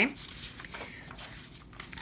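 Sheets of printed paper rustling softly as pages are turned by hand.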